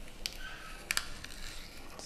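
A metal apple corer pushed down into a raw apple, giving a few short crisp crunches as it cuts through the flesh, two of them close together about a second in.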